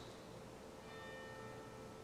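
Faint bell-like ringing, several steady tones coming in a little under halfway through, over a low steady hum.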